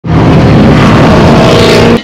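Sports car engine running hard at speed, very loud, its pitch climbing toward the end, then cutting off suddenly.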